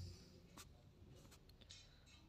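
Near silence with a few faint ticks of writing strokes on a tablet touchscreen.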